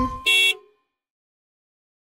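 A single short cartoon bus-horn beep, just after the last note of a children's song dies away.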